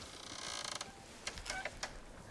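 A door creaking open for about a second, followed by a few light clicks.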